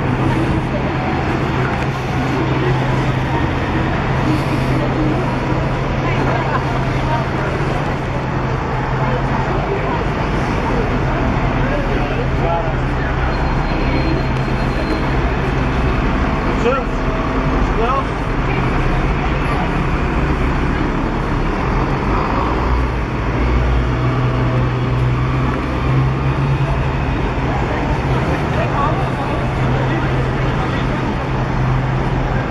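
Busy street traffic: double-decker buses and cars running in the road close by, with a steady low engine hum throughout, and passers-by's voices mixed in.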